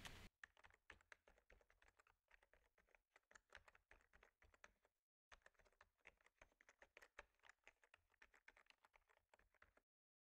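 Faint computer keyboard typing: a quick, uneven run of key clicks that breaks off briefly about halfway and stops just before the end.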